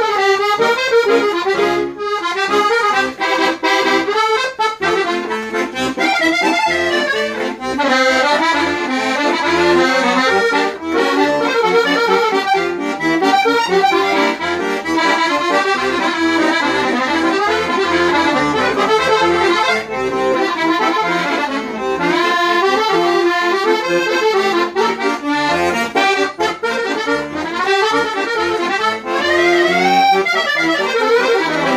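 Valentini Professional cassotto piano accordion played solo: a fast, busy melody on the right-hand keys over left-hand bass accompaniment, running on without a break.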